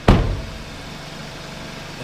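A car door shut with a single loud thud, then the 2015 Hyundai Elantra GT's 2.0-litre four-cylinder engine idling steadily.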